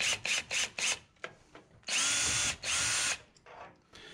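Ryobi cordless drill/driver with a long Phillips bit backing out a screw: the motor whines in two short bursts a little after the middle, after a quick run of clicks in the first second.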